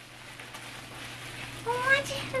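Faint rustling under a steady low hum, then near the end a short, rising, voice-like sound.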